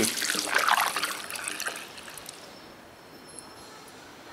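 Liquid fuel additive poured from a bottle through a plastic funnel into a car's fuel filler, a trickling pour that dies away about two seconds in as the bottle empties.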